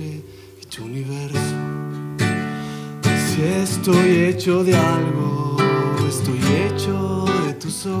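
Nylon-string classical guitar strummed and plucked in an instrumental passage of a song. It drops away briefly just after the start, then comes back in with new chords about every second.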